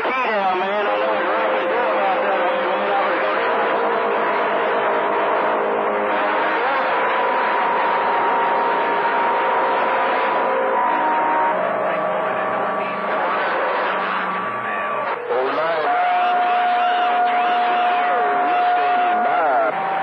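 CB radio receiving long-distance skip on a crowded channel 28: static with garbled, overlapping voices and several steady whistling tones, the beat notes of stations keying up on top of one another. The tones change abruptly about three-quarters of the way through.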